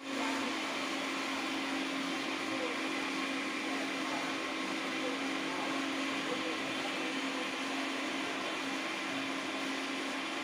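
Factory machinery running steadily in an AAC block plant shed: a constant drone with one steady low tone over an even hiss.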